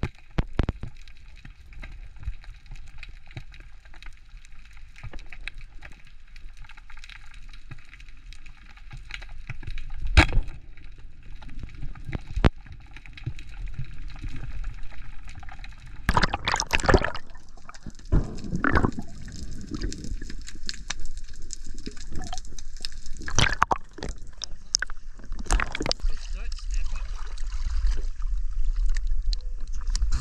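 Underwater sound from a spearfisher's camera: muffled water movement and gurgling, broken by several sharp knocks, with sloshing water growing louder towards the end as he surfaces beside a kayak.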